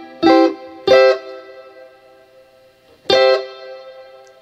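Electric guitar playing C major triad chords: three chords struck, two about a second apart and the third about two seconds later, each ringing out and fading through delay and reverb.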